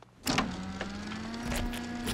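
An animated sci-fi machine switching on after its button is pressed: a sharp clunk about a quarter second in, then an electric motor running with a steady hum that rises slightly in pitch, with several mechanical knocks and clanks.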